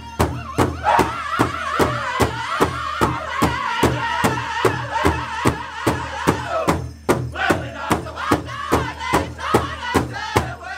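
Powwow drum group singing together while striking a large shared powwow drum in a steady beat, about two and a half strokes a second. The singing breaks off briefly about seven seconds in, then starts again over the unbroken beat.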